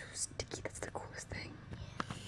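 Soft whispering voices with a few faint clicks.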